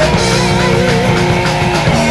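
Speed/thrash metal demo recording: distorted electric guitars over fast drums, with a sustained lead line that wavers in pitch in the middle.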